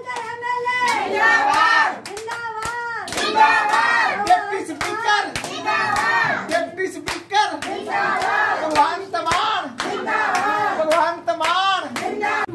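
A group of women singing Punjabi boliyan (folk verses) together to steady rhythmic hand-clapping.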